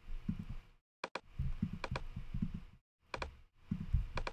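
Computer mouse clicking: a pair of quick clicks about a second in and another pair just past three seconds in, with faint low background noise between.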